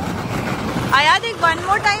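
About a second of even rushing noise, then a high-pitched voice talking in quick, rising and falling bursts.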